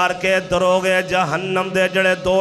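A man's voice preaching into a microphone in a sung, chant-like delivery, its pitch wavering and held on drawn-out syllables.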